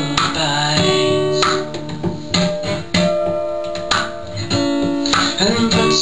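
Acoustic guitar strummed in a steady rhythm, chords ringing between strokes, accompanying a live folk song.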